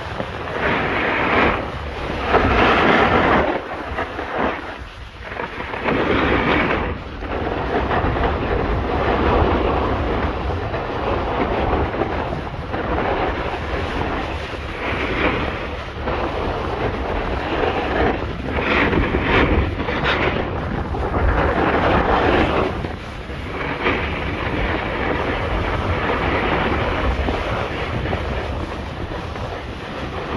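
Skis sliding and scraping over packed snow during a downhill run, with wind rushing over the microphone; the scraping swells and fades with each turn every couple of seconds.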